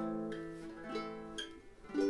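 Flight GUT 350 guitalele, a six-string small guitar freshly tuned like a guitar capoed at the fifth fret, strummed. A chord rings and fades, is strummed again about a second in, and is struck once more at the very end.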